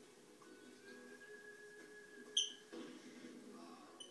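Masked lovebird giving one short, sharp, high chirp a little past halfway through, over faint steady background tones.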